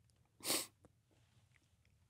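A single short, breathy puff from a person about half a second in, like a sniff or sharp breath; otherwise near silence.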